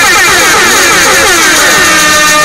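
A hip hop track with a loud sound effect in a break in the rap: a rapid run of falling pitch sweeps, several a second, that dies away near the end as steady backing tones carry on.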